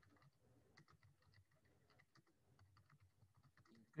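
Faint computer keyboard typing: quick, irregular key clicks, several a second, as a sentence is typed.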